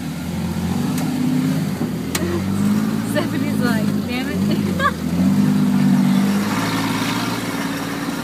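Off-road vehicle engine running at low trail speed, its revs rising and falling several times with the throttle, heard from inside the cab. Faint voices come in briefly midway.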